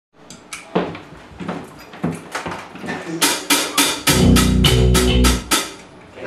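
A rock band playing in a small room: scattered drum hits, then a steady run of strikes about four a second. Under them a low electric guitar and bass chord is held for about a second and a half before the playing stops.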